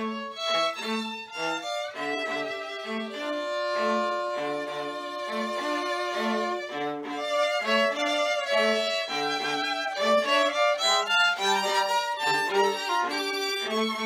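A string trio plays a chamber piece: longer held melody notes sound over a steady accompaniment of short, repeated low notes about twice a second.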